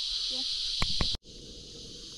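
A steady, high-pitched chorus of insects buzzing from the riverbank, with two sharp clicks a little under a second in. Just over a second in the sound cuts off abruptly and gives way to a quieter, low, even background noise.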